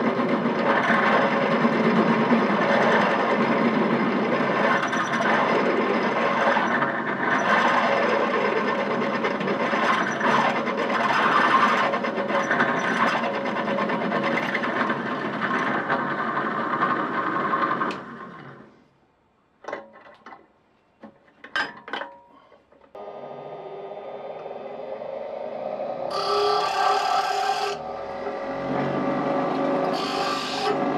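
Bench drill press running and cutting through copper bus bar, until the motor runs down and stops about 18 seconds in; a few sharp clicks follow. About 23 seconds in a bench grinder starts up and hums steadily, with louder bursts of grinding as a copper bar is pressed to the wheel.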